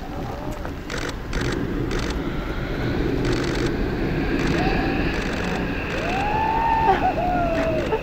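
Steady wind rushing over an outdoor microphone, with a person's voice calling out in long rising-and-falling calls about halfway through and again near the end.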